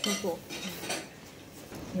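A ceramic soup spoon and chopsticks clinking and scraping against a patterned ceramic ramen bowl during eating.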